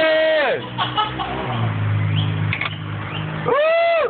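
High-pitched human laughter and squealing: one long squeal falling in pitch at the start and another rising then held near the end. A vehicle engine runs low in between.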